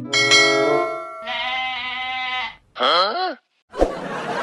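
Bell-like ringing tones, then a goat bleating: one long steady bleat and a shorter wavering one, with a sharp thump near the end.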